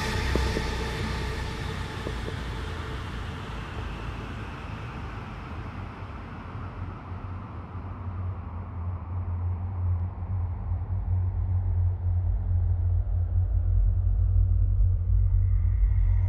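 Electronic dance music in a DJ mix, with a filter sweep closing down the highs over about ten seconds and leaving a deep bass rumble that grows louder toward the end.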